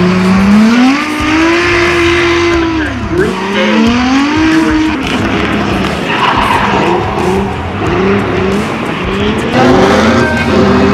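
Drift cars sliding through corners: engines revving high with tyres screeching. The engine note climbs about a second in, drops sharply around three seconds and climbs again, then breaks into a run of short, quick rises in pitch in the second half.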